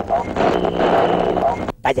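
A short, loud, noisy sound-effect sting under a TV show's title card, with a steady held tone joining about half a second in; it cuts off abruptly near the end, and a man starts shouting.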